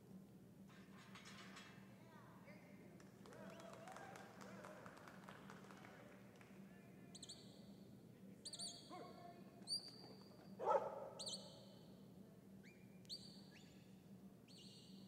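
Handler's herding whistle commands to a working cattle dog: a series of short, high whistles, each swooping up quickly and then held flat, starting about seven seconds in. A dog barks briefly around the ten-second mark.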